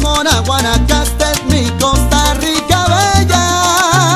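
Salsa band music: a moving bass line under steady percussion strikes, with a long held note with vibrato coming in about three seconds in.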